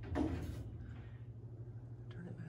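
The last word of speech, then a steady low hum with quiet room noise; no tool is running.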